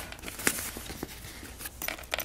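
Nylon fabric of an Ape Case ACPRO1700 camera backpack rustling as its front pocket is handled, with scattered light clicks from the zipper pulls.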